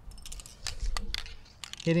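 Handling noise: a quick run of small clicks and crinkling as a spray paint can is picked up and the plastic-wrapped spear shaft is shifted in the hand, with a brief low rumble about halfway through.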